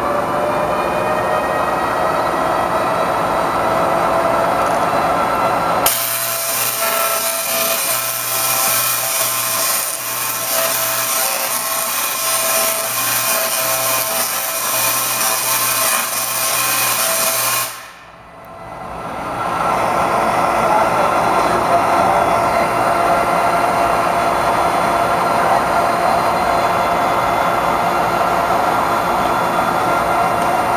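Large Tesla coil firing: a crackling electric-arc buzz starts abruptly about six seconds in, runs for about twelve seconds and cuts off suddenly. Before and after it there is a steady machine whine, rising in pitch at the start.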